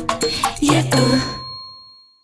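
The last notes of a song, with a bright bell dinging a few times; the final ding rings on and fades away as the music stops.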